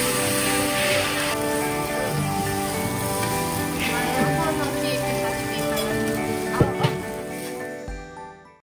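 Background music with sustained tones over a steady sizzling hiss from a teppan griddle, with two sharp clicks near the end; the music fades out at the close.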